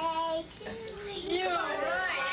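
A child singing in a high voice: a held note at first, then a line that slides up and down in pitch.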